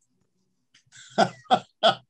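Three short, sharp bursts of a man's voice, about a third of a second apart, after a moment of silence.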